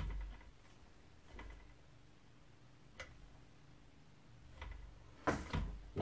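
A few faint handling sounds on a glass digital bathroom scale: soft taps, a single sharp click about halfway through, and a louder knock near the end as the scale is lifted off the table.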